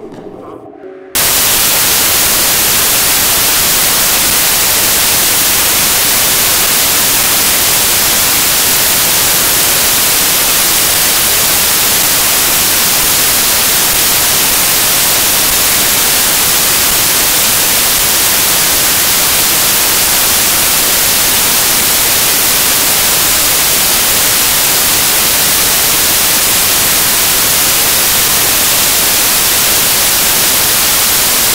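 Loud, steady static hiss that cuts in suddenly about a second in and holds unchanged, strongest in the high frequencies.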